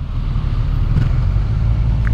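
Kawasaki Ninja 1000SX's inline-four engine running at low revs, a steady low rumble heard from the rider's seat.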